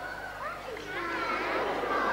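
High-pitched children's voices calling out, several overlapping.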